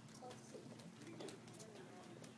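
Faint, distant voices murmuring in a large room, with no one speaking close by.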